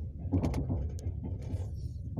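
Passenger train carriage in motion, heard from inside: a steady low rumble with irregular knocks and rattles, and a few sharp clicks in the first half.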